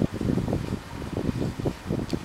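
Wind buffeting the microphone, a low irregular rumble that comes and goes in gusts.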